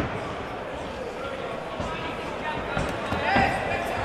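Crowd noise in an indoor fight venue, with indistinct shouting voices and a few dull thuds.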